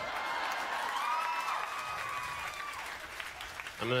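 Audience applauding and cheering, with a long held whoop in the middle; it dies away after about three and a half seconds.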